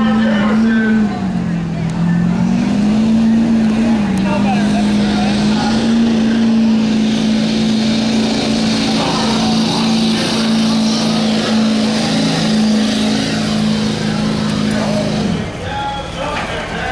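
Chevrolet pickup truck's engine running hard at high revs while pulling a weight-transfer sled down a dirt track. Its note sags about a second in, then holds steady and falls away shortly before the end as the truck finishes a full pull.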